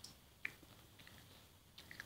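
Near silence: room tone, with a few faint, short clicks.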